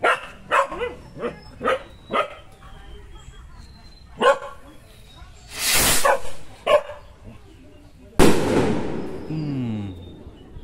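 A dog barks several times in the first couple of seconds. About five and a half seconds in, a kwitis skyrocket launches with a loud rushing whoosh. A little over two seconds later its charge bursts in the sky with a sharp bang that echoes away.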